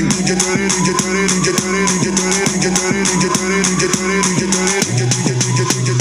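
Music with drums and a steady beat played through a small Mivi Roam Bluetooth speaker as a sound test. The bass line drops lower about five seconds in.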